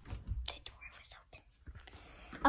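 Phone handled close to the microphone, giving scattered clicks and rubbing noises, with a soft whispered voice.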